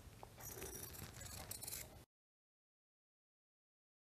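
Tailor's scissors snipping through folded cloth, two short cuts, then the sound cuts off to dead silence about two seconds in.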